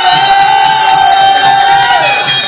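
Therukoothu ensemble music: a loud held, slightly wavering melody note that slides down at the end, over steady mridangam drumming.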